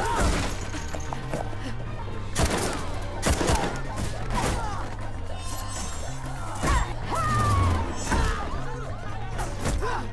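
Film fight-scene soundtrack: a music score under a run of punches, thuds and crashes, with the loudest hits about two and a half seconds in, around three and a half seconds, and near seven seconds.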